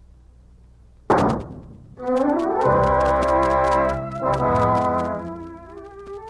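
A single pistol shot sound effect about a second in, the duelist firing his shot into the air. From about two seconds a brass-led orchestral music bridge swells in and then eases off near the end.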